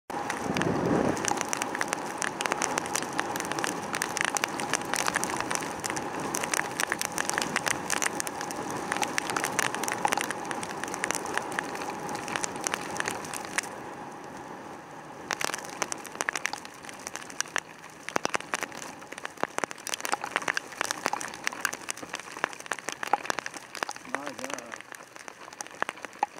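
Heavy rain striking a motorcycle-mounted camera in dense, rapid ticks, over steady wind and road-spray noise from a Yamaha YZF600R Thundercat riding on a wet motorway. The noise eases off somewhat about halfway through.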